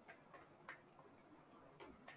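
Faint, irregular clicks of computer keyboard keys being typed, a handful of taps over otherwise near silence.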